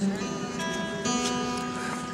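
Acoustic guitar chords strummed and left to ring, with a second chord about a second in.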